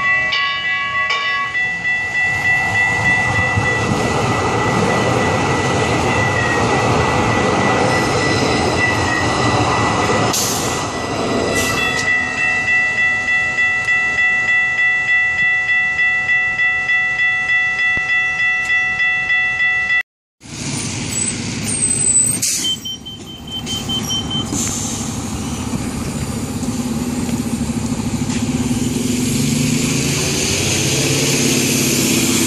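Level crossing warning bells ringing in a fast, steady rhythm as a C-Train light rail train approaches and rumbles over the crossing. After a cut, a city bus's engine is running amid traffic.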